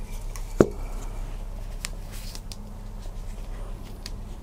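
Handling noises from a spray-primer can and a miniature in gloved hands: one sharp click about half a second in, then a few light ticks, over a steady low hum.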